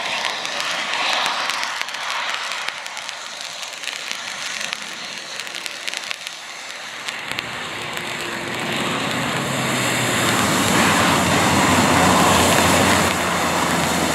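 Honda CR-V's engine working hard as the car ploughs through deep mud, with wheels spinning and mud spraying. A noisy, crackly hiss at first, then the engine's hum comes through about halfway in and grows steadily louder as the car draws near.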